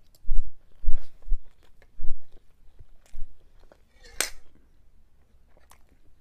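Close-miked mouth chewing a forkful of soft food from a lasagna, rice, chicken and cauliflower plate: several short wet bursts with low mic thumps over the first three seconds or so. About four seconds in comes one brief sharp click or smack, then the chewing goes quiet.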